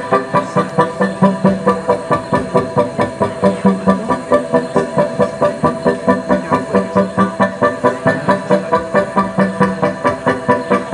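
Live electronic music: a steady, machine-like synth pulse of about three beats a second, with a low droning tone that swells in and out.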